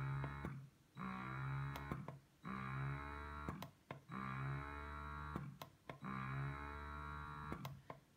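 Spectra 9 Plus portable electric breast pump running in expression mode: its motor gives a pitched hum for about a second on each suction cycle, then drops out briefly, repeating every one and a half to two seconds, with a few short clicks between cycles. The cycles slow slightly as the suction level is raised.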